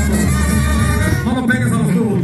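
Live banda music: a Mexican brass band playing, with a tuba carrying a loud, steady bass line.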